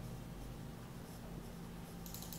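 Faint scratching of a marker writing on a whiteboard, over a steady low hum.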